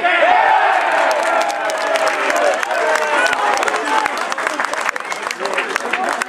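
A small football crowd cheering and shouting as a goal goes in, starting suddenly, with scattered hand-clapping that carries on through the celebration.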